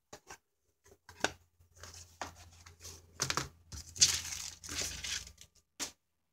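Thin cardboard candy boxes being handled on a plastic-covered craft mat: irregular rustling, scraping and crinkling with a sharp click about a second in, loudest about four seconds in.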